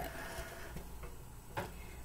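Faint handling of a sheet of paper being set in place against a board: a few soft taps, with one sharper click about one and a half seconds in.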